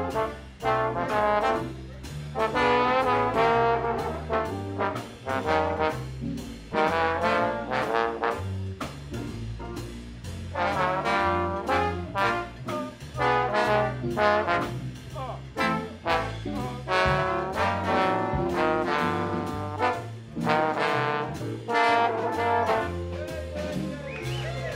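A jazz big band playing live, with the trombone section to the fore over a bass line that moves about two notes a second.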